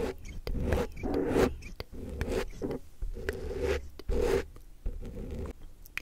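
Ribbed green plastic object rubbed close to the microphone in about six even strokes, one roughly every 0.7 s, with a rasping, zipper-like scrape; the strokes fade away near the end.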